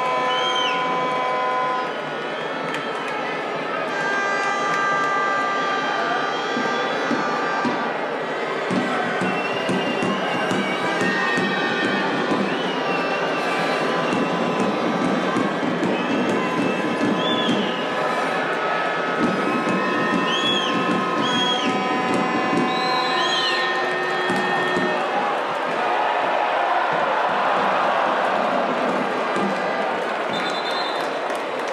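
Handball arena crowd: a steady din of many voices with long held tones over it, and short high squeaks of shoes on the indoor court now and then.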